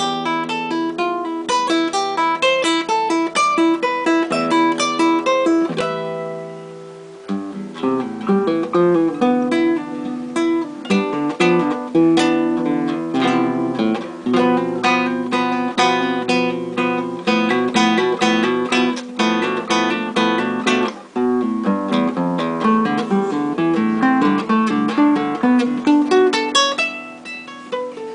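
Solo acoustic guitar playing a fast study built on slurs (hammer-ons and pull-offs), with rapid runs of plucked notes. The notes briefly die away about six seconds in before the runs resume.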